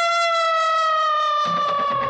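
A female singer holding one long, high sung note in a Bollywood film song, the pitch sagging slightly near the end, with the band's accompaniment coming back in about three-quarters of the way through.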